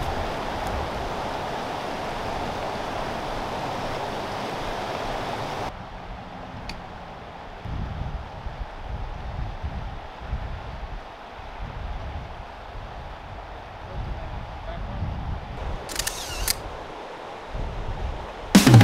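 Rushing river water, a steady hiss that cuts off abruptly about six seconds in. It leaves a quieter, uneven low rumble of wind on the microphone, with a couple of brief clicks near the end.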